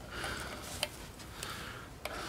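Faint handling of a small metal strap-lock pin and a screwdriver at the end of an electric guitar body: a light rustle with a few small clicks, the clearest a little under a second in.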